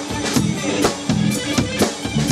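Three-piece rock band (electric guitar, bass guitar and drum kit) playing a blues number live in a rehearsal room, with a steady drum beat and a repeating bass line and no singing.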